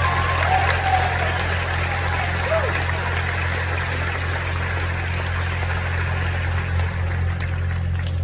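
Audience applauding steadily, with a few faint voices in the first couple of seconds and a constant low hum underneath.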